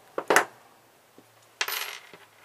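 Small metal parts and pliers clinking on a wooden tabletop: two sharp metallic clicks about a third of a second in, then a brief rattle near the end as the pliers are laid down.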